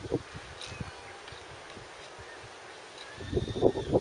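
Goats grabbing food: irregular rustling and scuffling noises, heaviest near the end.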